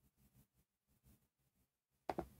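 Near silence: a dead gap in the audio.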